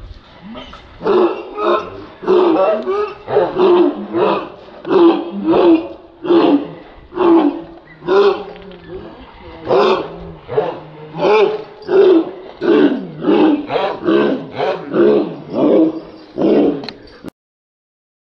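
Dogs barking over and over, about one and a half barks a second, in a steady run of loud short barks.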